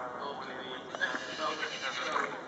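A horse whinnying about a second in, over a background of a public-address voice.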